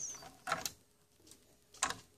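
Sharp clicks and light scraping as the bottom buffer circuit board of an LG plasma TV is worked loose from its connector and pulled out of the chassis: a pair of clicks about half a second in and another pair near the end.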